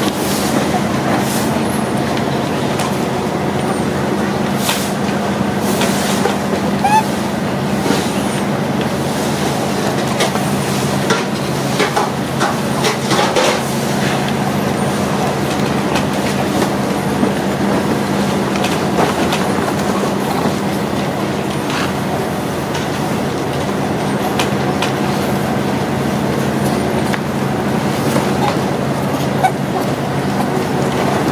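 A steady low mechanical hum, like a motor running, with scattered clicks and taps throughout.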